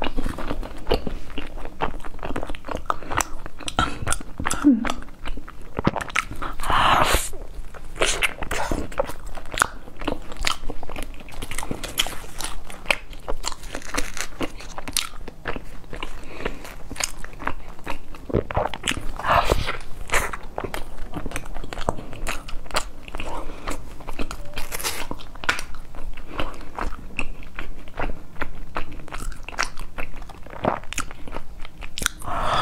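Close-miked biting and chewing of crusty baked bread, a steady run of crunches and mouth sounds, with paper being picked off the bread partway through.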